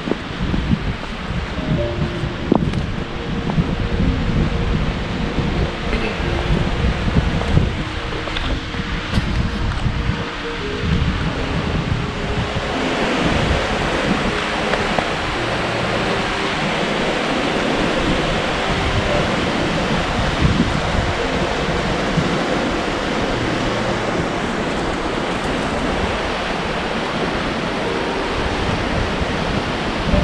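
River rapids rushing steadily, with wind buffeting the microphone. About twelve seconds in, the water sound becomes louder and fuller as the rush of the rapids takes over.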